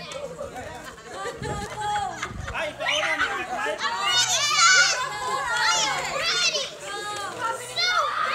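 Children shouting and squealing excitedly over several voices talking at once, with louder high-pitched shrieks in the second half. Two dull thumps come a couple of seconds in.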